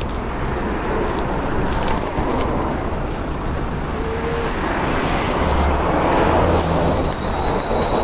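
Street traffic noise: a steady low rumble of passing road vehicles, swelling a little about six seconds in.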